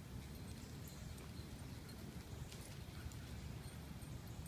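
Faint low rumble of wind on the phone's microphone, with a few light scuffs and clicks of dogs' paws as they play on a dirt yard.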